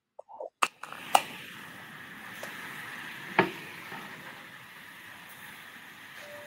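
A video-call microphone opening onto faint steady room hiss, with a few sharp clicks or knocks at about half a second, one second and three and a half seconds in.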